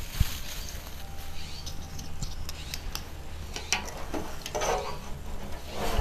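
Dried statice flowers rustling and light clicks from stems and wire as the bunches are handled and adjusted on a wire wreath frame, with a few short rustles near the end.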